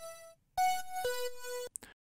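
Dry notes from a Serum synth's buzzy, bright wavetable oscillator, the raw layer of a chime patch with its effects switched off. One note dies away just after the start, then a higher note and a lower note are each held briefly, with a few short clicks near the end.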